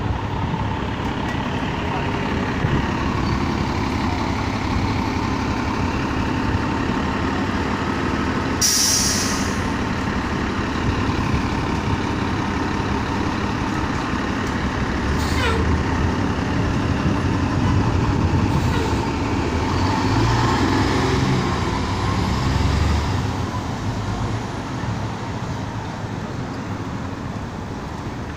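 Diesel engine of a 2006 New Flyer D40LF city bus running at a stop and then pulling away. A sharp burst of air hiss from its air brakes comes about nine seconds in. The engine note builds as the bus accelerates around twenty seconds in, then fades into street traffic near the end.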